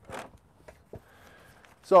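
Brief rustle and scrape as a metal baking tray lined with newspaper is picked up, followed by a couple of light clicks about a second in.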